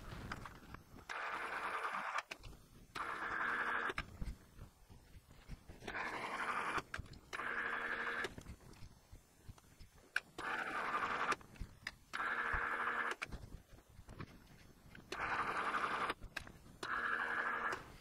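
Precision Matthews PM-1127 metal lathe switched on and off in short runs of about a second each, eight in all in four pairs: forward for a single-point threading pass on a metric 10 x 1.5 thread, then reverse to run the tool back, with the half nuts engaged. Each run has a steady whine from the motor and gearing.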